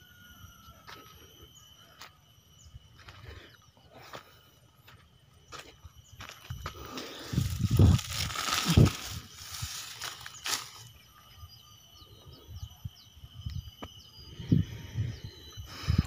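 Mostly quiet outdoor field with scattered small clicks, and a louder stretch of rustling and crackling from about seven to ten seconds in.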